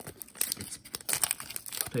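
Foil wrapper of a trading card pack being torn open and peeled back by hand: an irregular run of sharp crinkles and crackles.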